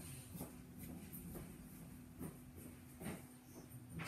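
Faint, scattered light knocks and rustles of someone moving about and handling objects, over a steady low hum.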